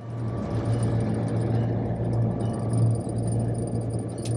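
Diesel locomotive engine running with a steady low drone and rumble, heard from on board the moving locomotive.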